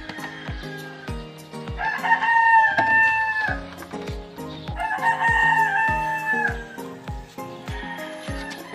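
A rooster crows twice, each crow about a second and a half long, over background music with a steady beat.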